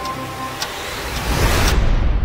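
Trailer sound design: a noise swell builds in loudness and cuts off sharply near the end, over a ticking pulse about twice a second.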